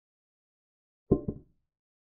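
Chess board program's move sound effect: two quick wooden knocks about a fifth of a second apart, marking a capture as a piece is taken.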